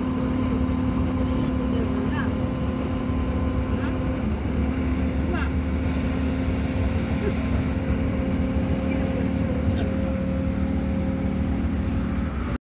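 Steady road and engine noise inside a moving road vehicle at speed, with a constant drone under it.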